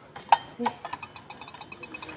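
A sharp metallic clink about a third of a second in and a fainter one just after, from a stainless steel measuring cup set being handled. Faint voices in the store behind it.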